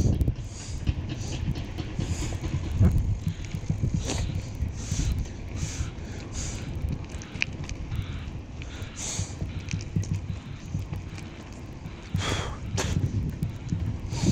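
Wind buffeting the microphone with a steady low rumble, over short breathy puffs that recur roughly once a second, louder near the end.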